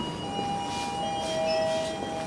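A few steady tones that step down in pitch, each held for a second or two and overlapping the next.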